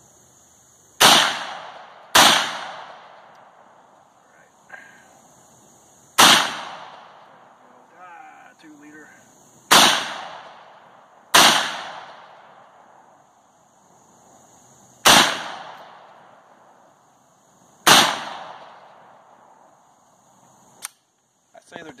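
Seven single shots from an AK-47-pattern rifle, fired slowly at uneven gaps of about one to four seconds, each followed by a long fading echo.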